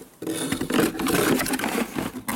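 A corded jigsaw and its power cord being pushed into a cardboard box: continuous, irregular scraping and rustling of the tool body and cord against the cardboard, starting about a quarter second in.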